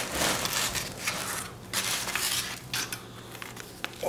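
Pizza slices being served onto big chrome plates: a run of short scraping and clattering sounds of the plates and slices for the first two and a half seconds, then a single sharp click just before the end.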